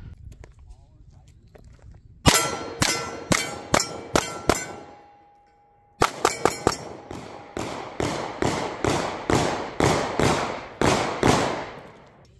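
A Ruger Max-9 9 mm micro-compact pistol firing quick strings of shots at steel targets, the steel ringing on hits. About eight shots come first, then a pause of over a second, then a longer string of about twenty shots at roughly three a second.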